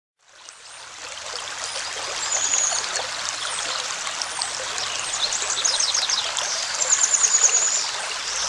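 Water flowing in a babbling stream, fading in at the start. Above it, several runs of high, quick chirping trills come and go.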